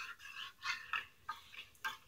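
Stirring utensil scraping and clicking against the inside of a small metal pot of liquid soft-plastic lure mix as a scent additive is stirred in. Quiet, irregular scrapes, several a second.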